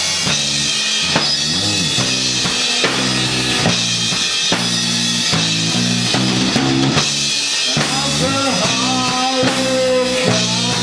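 Live rock band playing: electric guitar over a drum kit keeping a steady beat with bass drum and snare. Some notes bend in pitch near the end.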